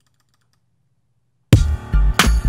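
Near silence with a few faint clicks, then about one and a half seconds in a boom bap hip-hop beat starts abruptly and loud on a deep bass note and a drum hit, played back from Propellerhead Reason 9.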